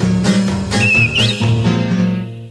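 Bouncy cartoon music with a regular strummed beat and bass notes. About a second in, a short whistle wavers and then slides upward.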